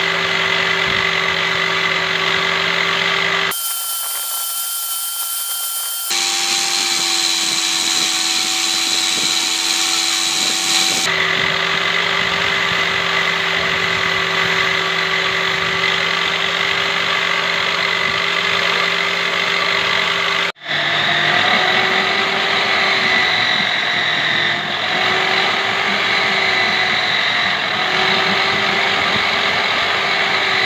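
Electric belt sander running with a steady motor whine while a wooden coat-hanger piece is pressed against the belt, the pitch wavering slightly as it takes the load. The sound changes abruptly several times, with a brief dropout about two-thirds of the way through.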